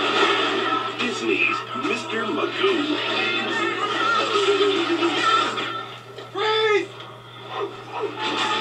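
Movie-trailer soundtrack played off a VHS tape: music with snatches of voices and comic effects, over a steady low hum. About six seconds in the sound drops briefly, then a short rising-and-falling, voice-like call stands out.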